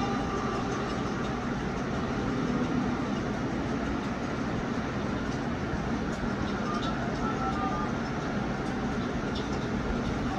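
Film soundtrack playing from a television: the steady engine and road noise of a car being driven, with a few faint short beeps in the second half.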